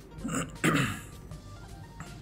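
A person clears their throat in two short rough sounds a little under a second in, over background music.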